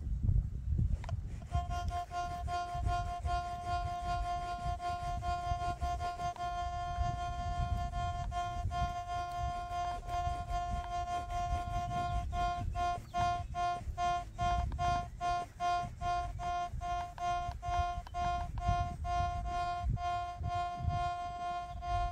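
Quest Q60 metal detector sounding a steady electronic tone while it ground-balances over the soil. About halfway through the tone turns into a rapid on-off pulsing.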